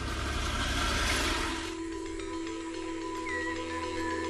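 An old Land Rover four-wheel-drive drives past on a dirt road. Its engine and tyre noise grows to a peak about a second in and then fades. From about two seconds in, soft music with long held notes takes over.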